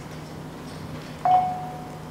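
A single chime tone starts suddenly just over a second in, holds one pitch and fades within a second, over a steady low electrical hum.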